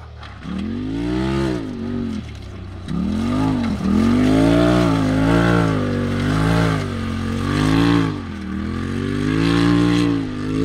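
Polaris RZR Turbo four-seat side-by-side's engine revving up and easing off over and over as it is driven around the dirt track and over its jumps.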